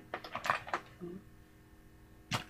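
Makeup items being handled: a quick run of small clicks and taps in the first second, with a brief voice sound just after.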